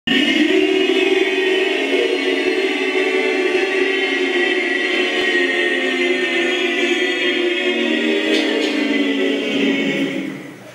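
A group of voices singing or chanting together in long held notes, continuous and fairly loud, fading out at the end.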